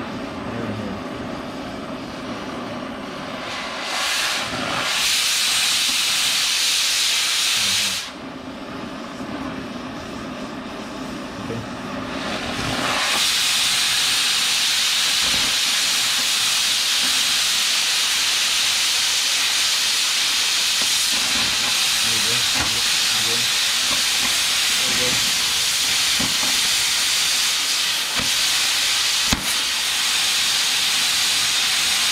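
Oxy-fuel cutting torch hissing against the steel of an auger. The hiss grows louder about 4 s in, drops back about 8 s in, and from about 13 s on holds a loud steady hiss while the torch cuts and throws sparks, as when the cutting-oxygen jet is turned on.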